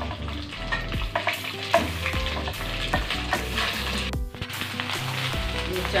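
Parboiled basmati rice sizzling in hot ghee in a kadhai as it is poured in and stirred, with a metal spoon clicking and scraping against the pan.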